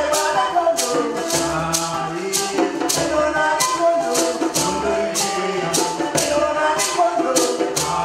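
A shekere, a gourd shaker netted with beads, rattles in a steady beat of about two shakes a second. With it a man sings and hand drums thud in time.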